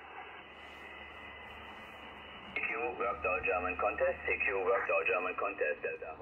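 Amateur HF transceiver on 40-metre lower sideband: steady band hiss, then about two and a half seconds in a station's voice comes through, thin and narrow like a telephone.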